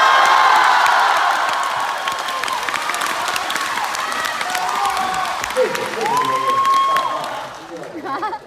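Theatre audience applauding and cheering, with long shouted calls and whoops over the clapping. It comes in suddenly at full strength and tapers off near the end.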